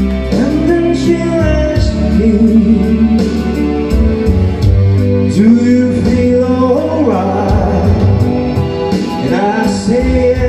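Men singing into microphones over backing music, all played loud through PA speakers.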